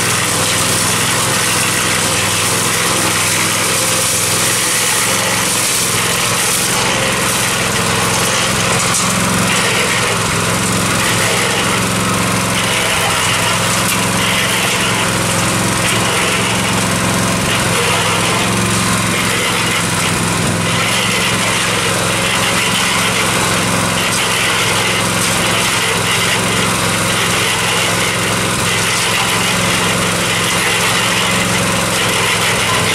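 Small five-to-six-horsepower single-cylinder gasoline engine, fitted in place of the electric motor on a Harbor Freight cement mixer, running steadily at constant speed to turn the drum.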